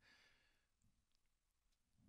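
Near silence: a brief pause with only faint background hiss.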